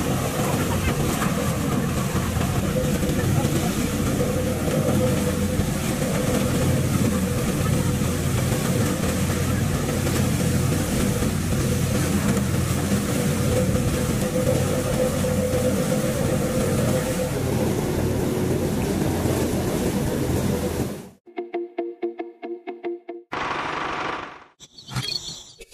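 Steady engine-like running of a miniature belt-driven paddy thresher's motor and spinning drum while rice stalks are threshed against it. It cuts off suddenly about three seconds before the end, giving way to a short rhythmic run of music-like tones.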